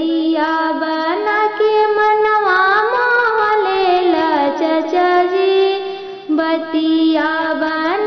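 A woman singing a Bhojpuri kanyadan wedding song (vivah geet) in long, high, ornamented held notes that slide up and down, with a short break a little before six seconds in.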